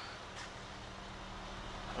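2010 BMW X6 M's 4.4-litre twin-turbo V8 idling: a quiet, steady low hum heard from inside the cabin.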